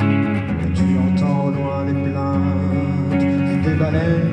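Live guitar music in an instrumental passage, with held low notes underneath.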